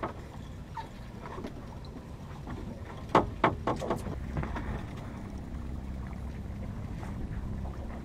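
Steady low rumble of a fishing boat's engine running, with a quick run of sharp clicks and knocks about three seconds in.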